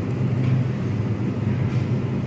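Steady low hum of a supermarket's background machinery, such as freezer-case refrigeration and air handling, with no distinct events.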